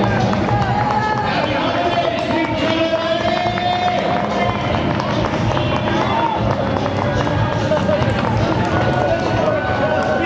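Footfalls of a large pack of runners on asphalt, mixed with crowd voices and music that has long held notes.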